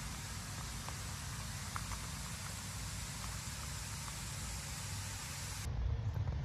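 Steady outdoor background noise, a low rumble with a hiss over it and a few faint ticks. The character of the noise changes abruptly near the end.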